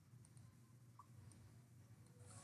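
Near silence: quiet room tone with a few faint, short computer mouse clicks.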